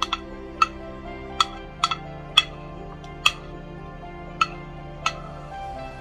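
About ten sharp, irregular clinks against a glass salad bowl as sliced bell peppers are dropped into it off a cutting board, over instrumental background music with sustained tones.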